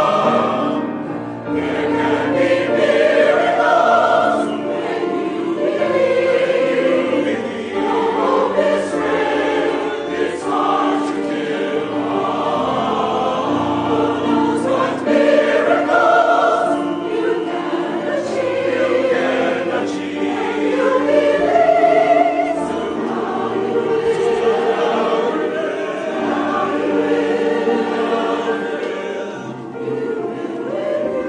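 Mixed choir of men's and women's voices singing in harmony with piano accompaniment. Long held chords change every second or two, swelling and ebbing in loudness.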